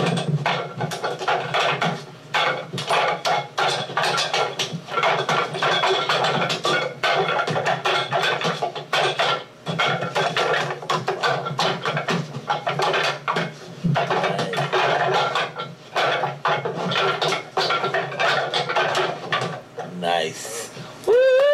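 Wooden Wing Chun training dummy being struck in a fast flurry: rapid wooden clacks and knocks of forearms and hands against its wooden arms and trunk, many per second, with a few brief pauses.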